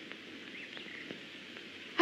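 Faint woodland ambience: a low, steady background hiss with a faint bird chirp about a second in.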